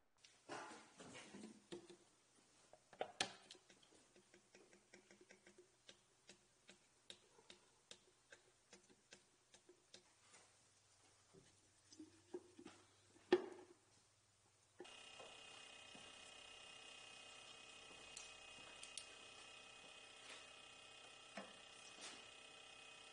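Faint, irregular clicks and ticks of hand work on parts in a car's engine bay, with two louder knocks, a little after the start and about halfway through. About two-thirds of the way in, a steady hum with several held tones starts suddenly and keeps on.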